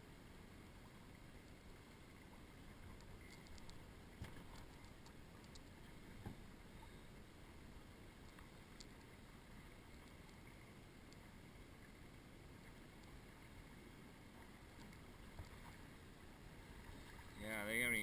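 Faint, steady wash of small waves lapping against the hull of a drifting boat, with a few light knocks a few seconds in.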